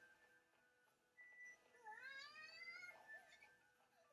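A faint single meow, dipping and then rising in pitch, about two seconds in, over faint music.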